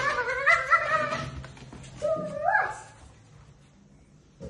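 A young child's high-pitched, drawn-out voice: one long wavering call through the first second and a half, then a shorter one about two seconds in that slides down in pitch at its end.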